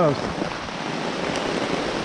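Heavy rain in a downpour, falling steadily as a dense, even hiss.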